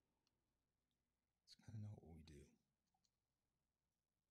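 Near silence, broken about halfway by a brief murmur of a person's voice lasting about a second, with a couple of faint ticks around it.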